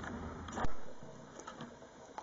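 Faint handling noise of small metal parts in the fingers, with one soft knock about half a second in and a few light ticks after it.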